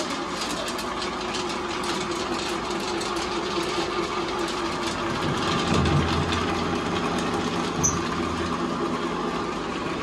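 Small electric flat-die pellet mill running steadily while pressing fish feed, with a dense crackle of clicks and rattles over its motor hum. It grows briefly louder about six seconds in, with a sharp click near eight seconds.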